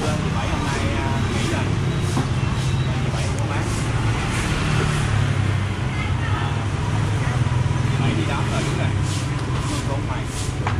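Street traffic: a motor vehicle engine running steadily nearby, with a constant low hum.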